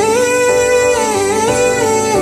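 Music: a slow acoustic pop song without words, plucked guitar under a melody line that glides up and down.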